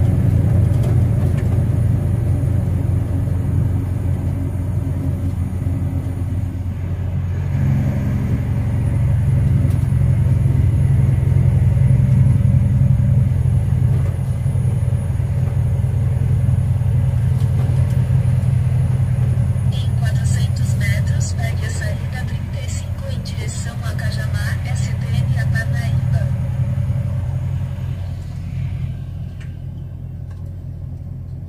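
Truck's diesel engine running at road speed, heard from inside the cab: a steady low drone that rises in pitch and loudness about seven or eight seconds in. A run of short sharp clicks comes between about twenty and twenty-six seconds in.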